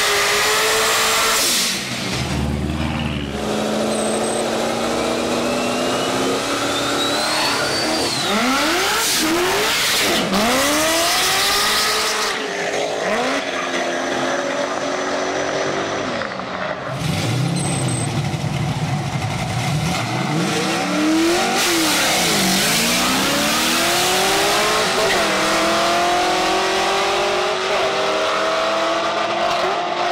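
Car engines revving hard during burnouts, with tire squeal, then two cars accelerating away side by side. Their engine notes rise in pitch and drop back over and over as they shift through the gears.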